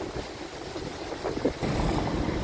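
Low rumble of road traffic on a coastal avenue, growing louder in the last half second.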